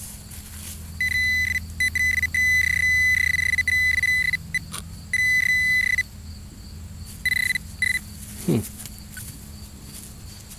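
Garrett Pro-Pointer pinpointer sounding a steady high-pitched tone in on-and-off stretches, one held for about two seconds, as it is worked around the hole. The tone signals a metal target close to the probe tip. It stops about six seconds in and comes back briefly once more.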